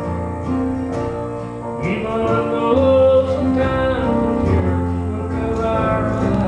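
Live gospel song: a man singing into a microphone, accompanied by an electronic keyboard and guitar.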